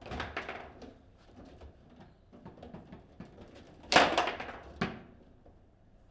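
A table football game in play: the ball knocking against the figures, rods and walls of the table. There is a flurry of clacks at the start, scattered lighter knocks, then a louder burst of hard impacts about four seconds in.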